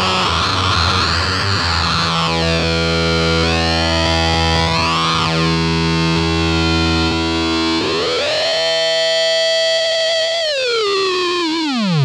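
Electric guitar played through a Mantic Flex PLL-style fuzz pedal into a '64 blackface Champ: a sustained, synth-like fuzz note whose tone sweeps up and down as the pedal's knobs are turned. About eight seconds in the pitch glides up, holds, then slides down near the end.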